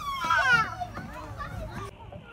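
Young children's voices at a playground: high-pitched calls and chatter, loudest in the first second and fainter after.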